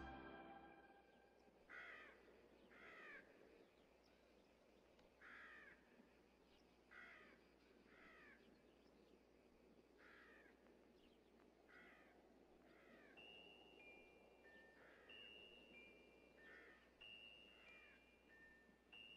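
A dog barking faintly and repeatedly, short high barks singly or in pairs about every one to two seconds, over the low background noise of a large hall. From about 13 seconds in, a chime-like tune of held high notes plays alongside.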